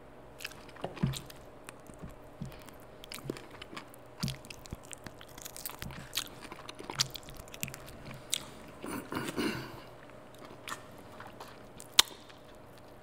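A person chewing and biting food close to the microphone, with many short, irregular crunches and wet mouth clicks, a louder stretch of chewing about nine seconds in.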